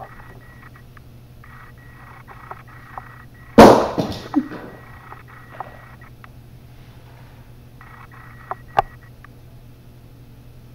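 A single loud bang about a third of the way in, with a short clattering tail, then two faint knocks near the end, over a steady low hum.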